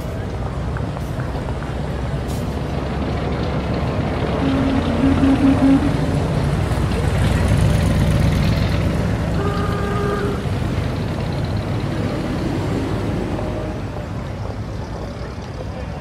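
Added street ambience: motor-vehicle engines running under an indistinct murmur of voices, with a brief horn toot about ten seconds in.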